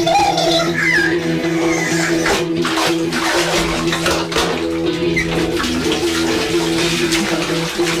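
Experimental sound collage: water sloshing and splashing in a bath, played as a musical instrument, over a steady sustained drone.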